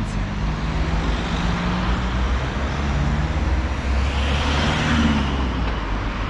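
Road traffic: a vehicle engine running steadily under an even wash of tyre and traffic noise. The noise swells about four to five seconds in as a car passes.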